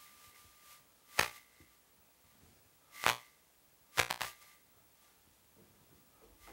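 Sharp knocks or pops: one about a second in, another about three seconds in, and a quick rattle of several just after four seconds.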